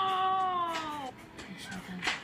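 A woman's long, drawn-out 'ohhh' of surprise, rising sharply at first and then falling slowly in pitch before stopping about a second in, played through a small device speaker.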